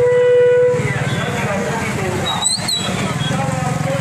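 One steady horn-like blast, lasting under a second, at the start over the chatter of a walking crowd; about halfway through, a short high whistle rises and falls.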